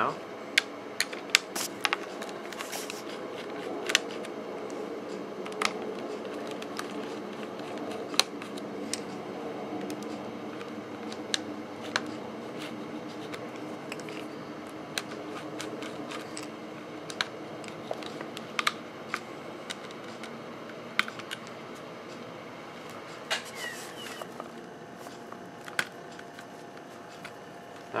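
Small screwdriver backing screws out of the underside of a Dell Latitude D430 laptop: scattered light clicks and taps of metal on the plastic case, over a steady low hum.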